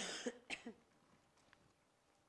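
A person coughing: a loud cough right at the start and a shorter second one about half a second later.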